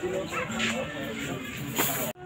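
Voices of a group of people talking over acoustic guitar playing, with a short, loud noisy burst near the end.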